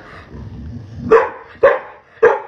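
A dog barking twice, two short sharp barks about half a second apart, a little over a second in.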